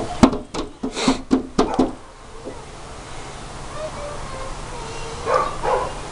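A quick run of short bursts of laughter and shrieks, about four a second, in the first two seconds, then two short squeals just before the end.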